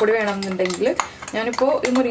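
A spoon scraping and clinking against the inside of a mixer-grinder jar as ground coconut mixture is emptied into a pot. A woman talks over it.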